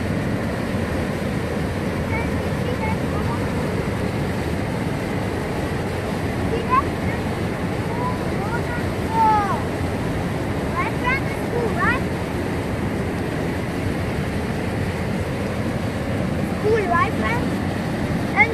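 Steady rushing of the Elbow River's whitewater rapids pouring over rock at Elbow Falls, heard close by. A few short voice sounds rise over it near the middle and near the end.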